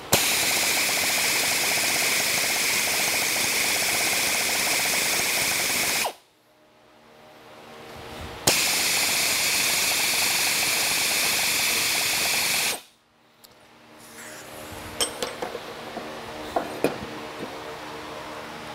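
Air-powered ratchet spinning a steam locomotive throttle valve in its seat to lap the valve faces in with coarse valve grinding compound: two runs of steady air-motor whir and hiss, about six seconds and then about four, with a short pause between. Near the end, a few light clicks and knocks.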